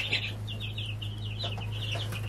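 A brood of ten-day-old chicks peeping: many short, falling high cheeps, several a second, over a steady low hum.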